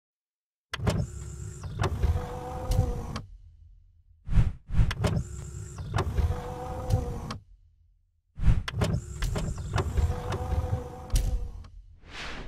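Animated-intro sound effects: three near-identical bursts of mechanical motor whirring with clicks, each about three seconds long. A short whoosh falls between the first two, and another whoosh comes at the very end.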